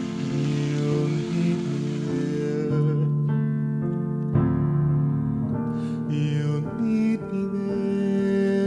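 Live jazz-style duo: a saxophone holding sustained notes over chords played on an electric piano.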